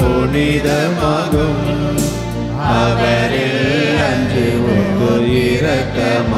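A hymn sung by a voice with vibrato over sustained instrumental accompaniment with held bass notes.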